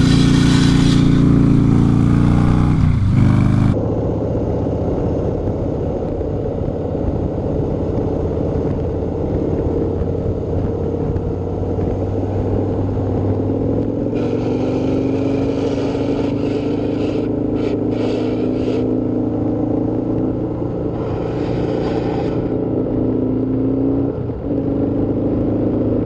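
Harley-Davidson Springer Softail V-twin engine running while under way, with wind rushing over the microphone. The engine note drops briefly about three seconds in, then runs on steadily with slow rises and falls in pitch, and gusts of wind noise come and go in the second half.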